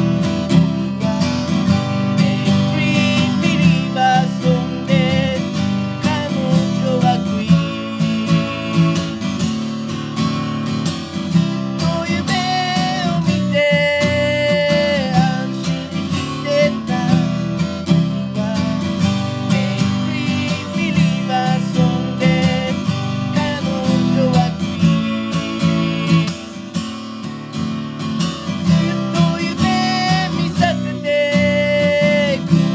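Martin HD-28 dreadnought acoustic guitar strummed in a steady rhythm, with a voice singing a melody in Japanese over it.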